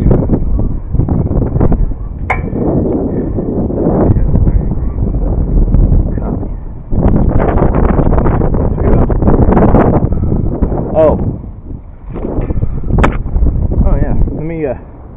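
Wind buffeting a helmet-camera microphone high on a tower, loud and gusty, with two sharp clicks about two seconds in and near the end.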